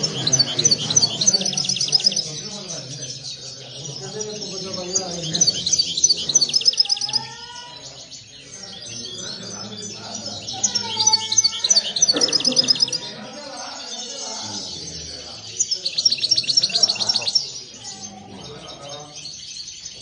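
Caged European goldfinches singing in repeated bouts of rapid, high twittering trills, with short lulls between.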